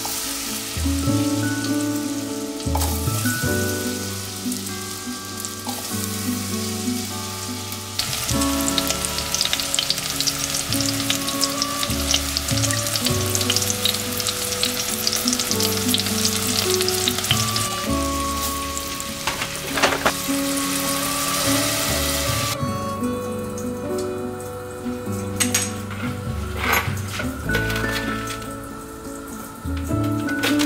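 Diced apple frying in hot fat in a stainless steel saucepan, sizzling and crackling. The sizzle builds about three seconds in, is at its busiest from about eight seconds, and eases off a little past twenty seconds, with a few short knocks near the end.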